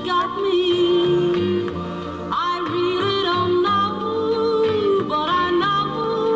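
Instrumental break of a slow country song: a wordless, voice-like lead melody of held notes that slide up and down in pitch, over a backing of low bass notes.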